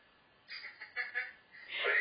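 A woman laughing briefly: a few short, quick bursts, followed by the start of her speech near the end.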